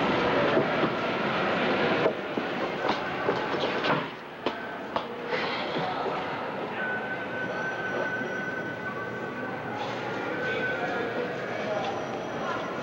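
Steady rumbling airport-terminal background noise, with scattered clicks and faint voices; it drops in level about two seconds and again about four seconds in.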